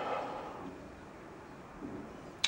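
Quiet room tone: a faint steady hiss in a pause between words, with the end of a spoken word trailing off at the start.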